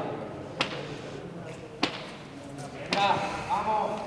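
Two sharp knocks of a hard, leather-covered hand-pelota ball striking the frontón court, a little over a second apart, with faint voices near the end.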